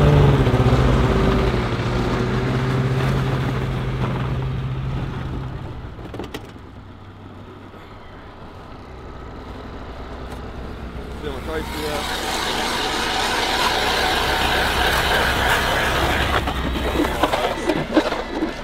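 Polaris Voyageur 600 snowmobile engine running steadily, its pitch easing down slightly before it fades after about six seconds. From about twelve seconds in, a powered ice auger bores into lake ice with a rough whirring grind.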